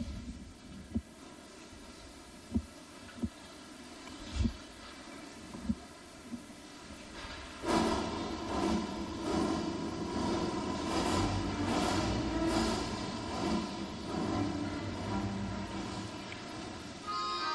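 A quiet arena hush with a few short, isolated knocks. About eight seconds in, the opening of the free-dance soundtrack starts suddenly over the arena speakers: a steady, noisy sound effect with a low hum rather than a melody.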